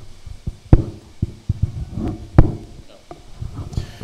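Handling noise from a handheld wireless microphone as it is switched on: a few sharp knocks and bumps picked up through the mic itself, the two loudest less than a second in and about two and a half seconds in.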